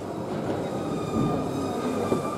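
Steady background noise of a large indoor arena hall, a low hum with a few faint, thin, steady high tones above it.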